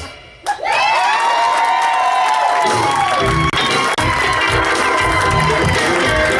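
Several voices hold a final sung chord that falls away near the three-second mark. Music with a steady low beat then comes in, under audience cheering.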